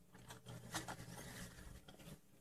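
Faint rubbing and scraping of hands and a measuring tape being pulled along a bench, with a few light clicks.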